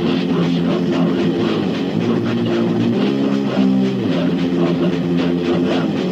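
Death metal: heavily distorted electric guitar riffing on held chords that change every second or so, over bass guitar and drums, from a 1989 demo recording.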